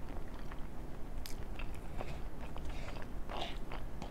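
Close-miked chewing of a mouthful of chicken enchilada, with scattered light clicks and scrapes of a knife and fork cutting food on the plate; one sharper click comes about a second in.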